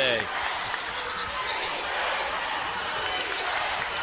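Steady crowd noise filling a basketball arena during live play, with a basketball being dribbled on the hardwood court.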